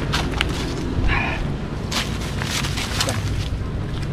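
Scuffing footsteps and sharp crackles on dry leaves and rock as people scramble up a rocky slope, over a steady low rumble on the microphone.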